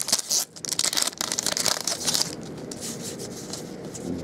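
Foil trading-card pack crinkling and tearing as it is ripped open, loudest for about the first two seconds, then softer rustling and sliding as the cards are handled.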